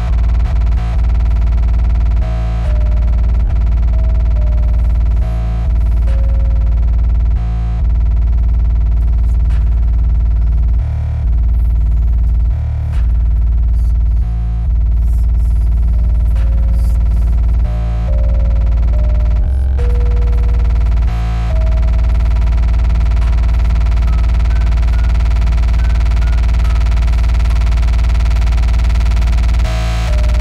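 Extratone electronic music: a distorted kick drum repeated at about 1120 bpm, so fast that it merges into a continuous low buzz, under a music-box-style melody in F minor. The beat breaks off briefly several times in the first two-thirds, then runs on unbroken.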